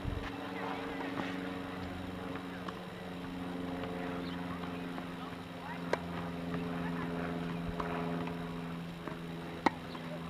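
Tennis balls struck by rackets during a baseline rally: sharp single pops, the loudest about six seconds in and again near the end, with fainter hits and bounces between. A steady low hum runs underneath.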